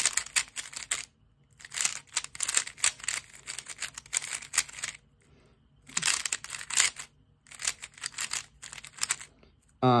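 Moyu WRM V10 magnetic 3x3 speed cube being turned fast by hand, its layers clicking and clacking in flurries of turns with short pauses between them. The cube is new, at its factory setup and not yet lubricated, and the cuber finds it fast and maybe a little loose.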